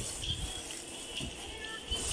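Background audio of a televised volleyball match between commentary lines: arena crowd noise with faint music and distant voices.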